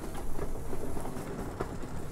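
Steady low rumble of room noise with a few faint clicks, between stretches of speech.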